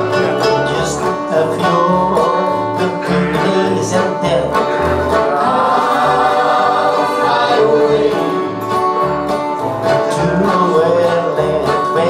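An acoustic gospel band plays live: strummed acoustic guitars, mandolin and accordion over a low beat about twice a second, with singing on top.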